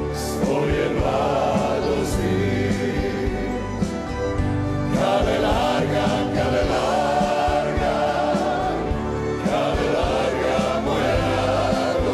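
Live concert music: a choir singing in sustained chords with an orchestra.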